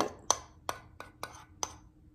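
Metal spoon clinking against the inside of a ceramic bowl while stirring melted candy melts: five short clinks over about a second and a half.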